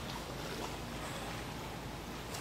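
Steady outdoor background noise, a low rumble with hiss and no distinct events.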